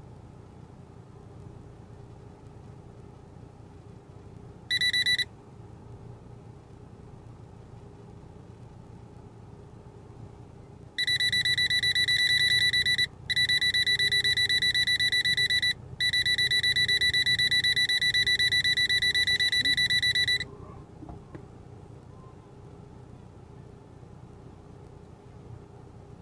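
High-pitched electronic beeping, rapidly pulsing, like an in-car warning beeper: a short burst about five seconds in, then a long run of about nine seconds broken twice by short gaps. Underneath is the steady low running noise of a vehicle moving slowly on a dirt track.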